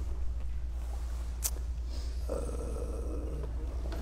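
Low steady hum with a single sharp click about a second and a half in, then a man's drawn-out, hesitant "uh" just past halfway.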